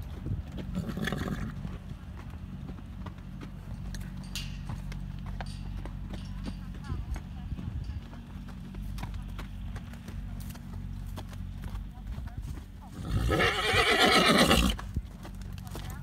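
A horse whinnies once, loudly, about 13 seconds in, the call lasting about a second and a half and wavering in pitch. Soft scattered footfalls on the dirt arena run beneath it.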